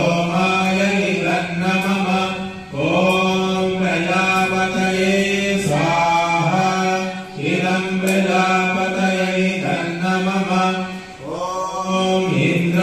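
A man chanting Sanskrit mantras into a handheld microphone, long phrases held on one steady pitch with short breaks for breath, the recitation that accompanies offerings into a havan fire.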